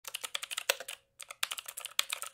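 Typing sound effect: a quick, irregular run of key clicks, with a short pause about a second in.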